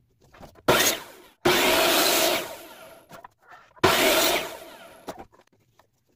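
Ryobi compound miter saw run in three short bursts, each starting suddenly and then spinning down. The longest, about a second and a half in, holds for about a second as the blade cuts a thin wooden strip.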